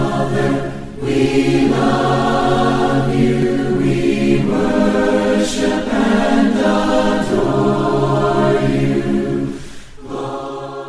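A choir singing unaccompanied in long held phrases, fading down near the end.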